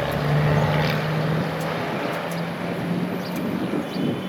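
Road traffic: a motor vehicle passing with a steady low engine hum and tyre noise, loudest in the first second.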